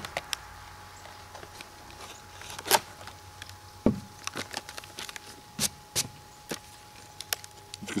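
Plastic blister packaging and its cardboard backing being handled and pulled apart to free a folding saw: scattered sharp crinkles and clicks, the loudest a little under three seconds in.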